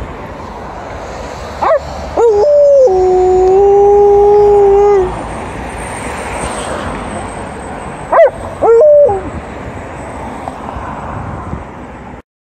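Alaskan Malamute howling twice. The first howl lasts about three seconds: it opens with a short rising yelp, steps up and is held on one steady pitch. The second, about six seconds later, is a quick one, preceded by a short sharp yelp.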